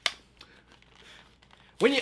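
A single sharp click, then faint rustling and crinkling of a plastic blister-packed trading card pack being handled and peeled open.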